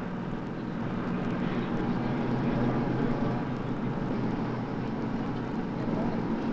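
Tour bus engine and road noise heard from inside the moving bus: a steady low drone.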